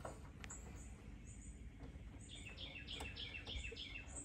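A small bird chirping in the background: a run of repeated high notes, about four a second, through the second half, with fainter high chirps before it. A couple of faint clicks from the wiring work.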